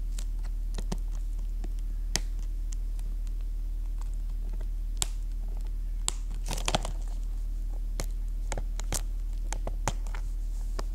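A steady low electrical hum with scattered sharp clicks from handling close to the microphone. A short burst of crinkling and clicking comes a little past the middle.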